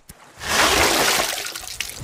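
Water rushing and splashing as a heavy wooden crate is hauled up out of the sea on a line, starting about half a second in and slowly tapering off.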